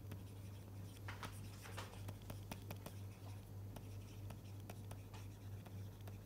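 Stylus writing on a tablet screen: handwriting strokes heard as a string of faint ticks and light scratches, over a steady low hum.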